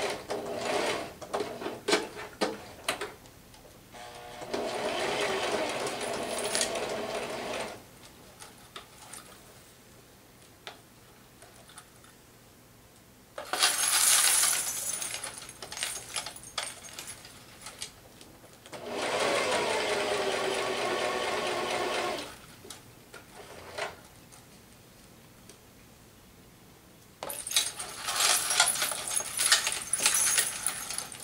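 Domestic electric sewing machine stitching in three short runs of a few seconds each, with pauses between. One run starts with a rising pitch as the machine speeds up. Near the start and the end, the scarf's metal coins jingle and clink as the fabric is moved.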